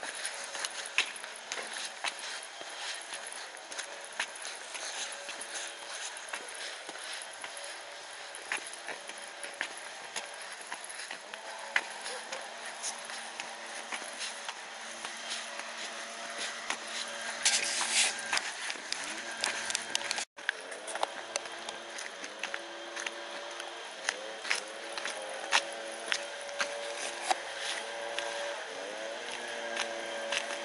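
Footsteps of a person walking on a paved path, with many irregular light clicks over a steady outdoor hiss. There is a short louder hiss about 18 seconds in. After a brief dropout, distant voices come in for the rest of the stretch.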